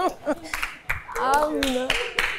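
Uneven, scattered handclaps from a small group, mixed with excited voices and one drawn-out call about halfway through.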